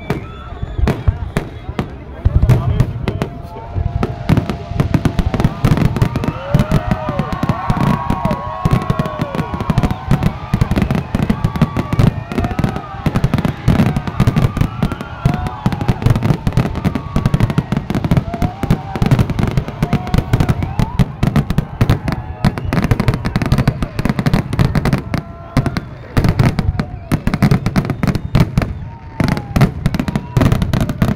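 Aerial fireworks display: a continuous run of shell bursts, bangs and crackles packed close together. People's voices rise and fall through it, most clearly a few seconds in.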